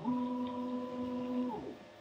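Stepper motors of a Mecpow X4 Pro laser engraver whining at one steady pitch as the gantry travels at speed across the work area. The whine falls in pitch and fades about three-quarters of the way in as the head slows to a stop.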